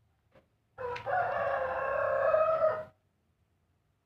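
A rooster crowing once: a short opening note, then one long held call lasting about two seconds.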